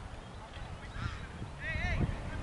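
Bird calls: a short rising call about a second in, then a louder warbling call near the end, over a low rumble.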